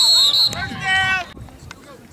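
A short, loud whistle blast of about half a second at the start, followed by a shouted voice and player chatter on the field.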